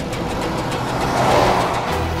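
A car driving off, its noise swelling to a peak about a second and a half in, over steady background music.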